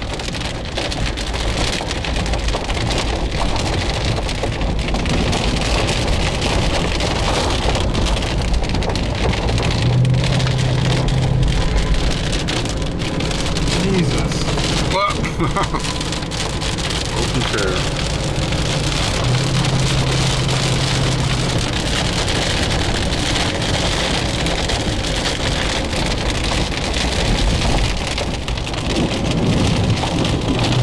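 Heavy rain falling on a car's roof and windshield, heard from inside the car as a steady hiss. A low hum swells twice for a couple of seconds.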